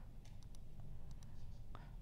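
Quiet room tone with a steady low hum and a few faint, short clicks scattered through it.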